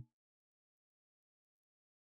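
Near silence: a held tone stops at the very start, then nothing but dead silence.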